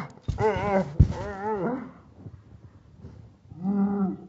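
A person's wordless, moaning voice, its pitch quavering rapidly up and down: several drawn-out moans in the first two seconds, then one more near the end.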